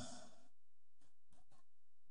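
A man breathing faintly into a close microphone between sentences, a few short breaths about a second in and again near the end. The echo of his last word fades at the start.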